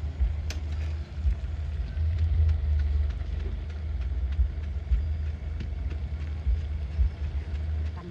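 High-pressure LPG gas burner burning under a cooking pot, a steady low rumble.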